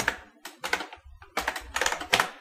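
Computer keyboard keystrokes: several short, sharp key clicks at an uneven typing pace as a terminal command is typed.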